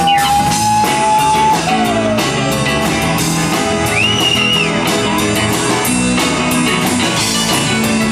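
Live rock band playing an instrumental passage on electric guitar, keyboard and drum kit, with steady cymbal strokes. A held lead note bends up and slides down in the first second or so, and a high bent note rises and falls around the middle.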